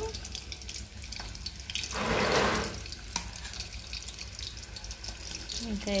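Battered chicken pakodi pieces deep-frying in hot oil in a kadai: a steady crackling sizzle with scattered small pops. About two seconds in comes a louder rush of noise lasting under a second.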